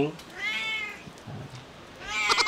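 A domestic cat meowing once, one short call that rises and falls in pitch.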